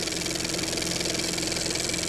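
Film-projector sound effect: a steady, rapid mechanical clatter with a low hum under it.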